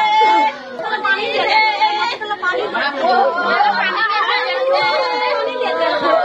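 Several voices wailing and crying out over one another without a break: mourners lamenting a death.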